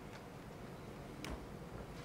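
Quiet hall ambience with two faint clicks: a soft one near the start and a sharper one about a second and a quarter in.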